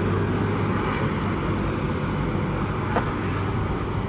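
Steady low rumble of outdoor town ambience with traffic noise, with one faint click about three seconds in.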